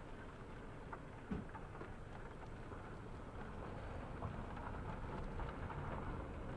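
Faint, steady outdoor background noise, mostly low rumble, with a few soft clicks and no distinct source standing out.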